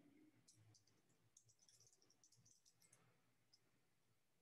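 Near silence with faint, short clicks, such as light desk clicking at a computer: a few scattered at first, a dense run from about one and a half to three seconds in, and a last single click near the end.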